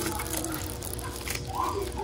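A clear plastic bag of Christmas ornaments crinkling faintly as a hand grips and turns it, over quiet shop background with a steady low hum.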